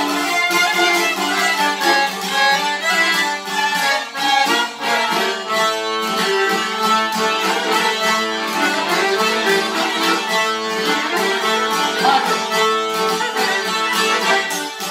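Albanian folk ensemble playing a lively tune: fiddle carrying the melody over a Hohner piano accordion and two plucked long-necked lutes.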